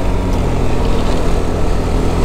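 Yamaha scooter's engine running steadily while riding, with wind and road noise.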